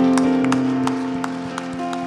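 Sustained keyboard chords held and slowly fading, with hand claps about two to three times a second over them.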